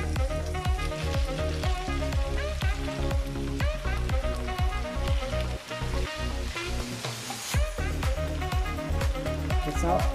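Sliced bitter gourd and pork sizzling as they are stir-fried and stirred with a wooden spatula in a pan, under background music with a steady beat.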